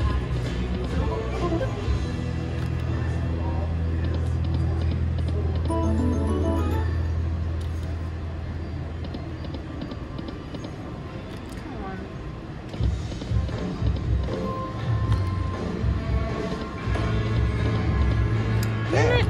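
Video slot machine's game music and spin sounds as the reels turn, with a steady deep hum through the first half that gives way to choppier low pulses, over casino background noise.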